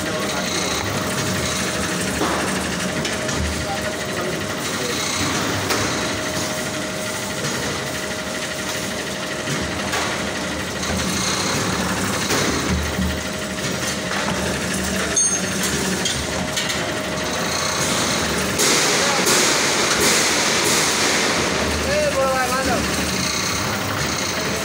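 Electric bakery dough-sheeting machine with its conveyor belt running at a steady hum while dough is fed through.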